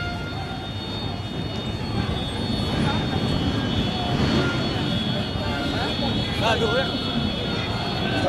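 Busy city street ambience: a steady low rumble of traffic and crowd noise, with scattered voices of passers-by and a short exclamation near the end.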